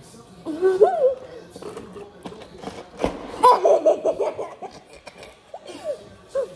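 Stifled laughter and giggling in two bursts, with a sharp knock just after three seconds in.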